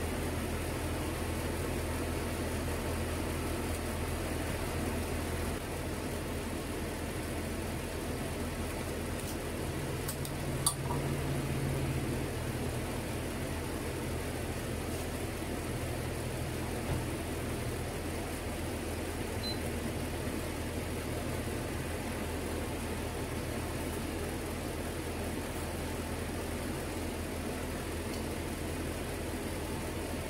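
Steady low hum of a kitchen fan, with a single sharp click about a third of the way through.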